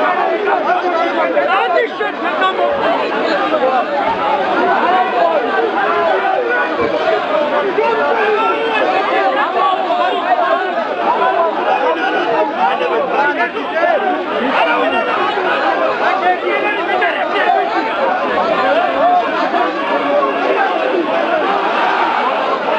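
A large crowd of men's voices talking and calling out over one another in a dense, unbroken babble, steady in loudness throughout.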